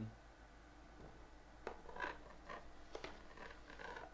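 Faint handling noises: a few light clicks and scrapes as a hard plastic card case is handled in its cardboard box, mostly between one and a half and three seconds in.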